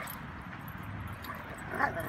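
Dogs play-fighting, with one short high yip from a dog near the end over a steady low background hum.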